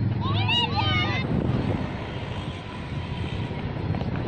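Children's high-pitched shouts on the cricket field for about a second near the start, over a steady low engine rumble.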